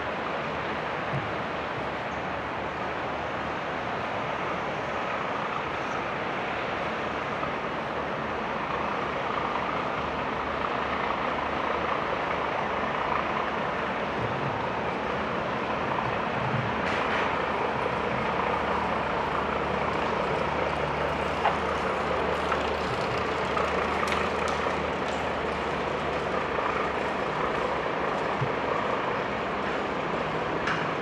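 Steady outdoor background noise, a continuous rushing hiss and low rumble that grows slightly louder towards the middle, with a few faint clicks.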